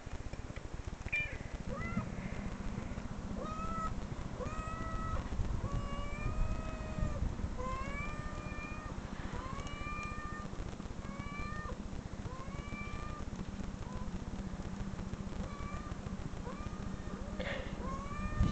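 A kitten meowing over and over, short high-pitched arched meows about once a second, growing sparser near the end, over a steady low hum.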